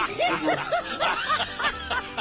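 Laughter: a quick run of rising-and-falling laughs, about four a second, over background music.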